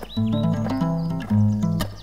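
Short instrumental title jingle: a melody over sustained bass notes in short phrases, with brief gaps and a couple of sharp clicks.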